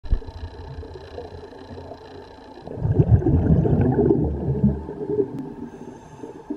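A scuba diver's exhaled bubbles gurgling and rumbling, heard through an underwater camera housing. A quieter low rumble gives way about three seconds in to a louder, irregular burst of bubbling, which fades toward the end.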